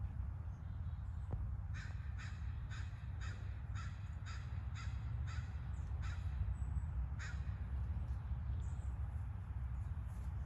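A bird calling about ten times in quick succession, roughly two calls a second, then once more about a second later, over a steady low rumble.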